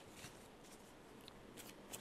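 Near silence, with a few faint, short rustles of a tarot deck being handled in the hand, most of them near the end.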